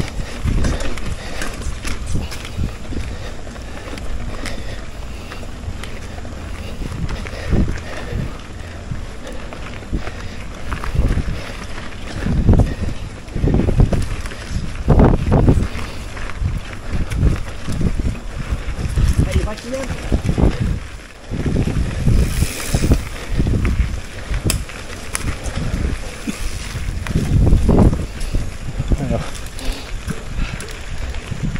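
Mountain bike riding over a dirt trail, heard as wind buffeting the camera microphone together with rolling trail noise, surging unevenly in gusts.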